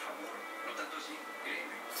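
Faint background television sound in a room, with a low steady hum underneath.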